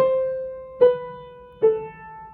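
An old piano played one note at a time with the right hand: three notes struck about 0.8 s apart, each a step lower than the one before, every one ringing and dying away before the next.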